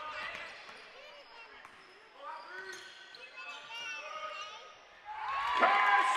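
Indoor basketball game sounds in a large gym: a basketball being dribbled on the hardwood, and scattered calls from players and spectators. The voices get louder about five seconds in.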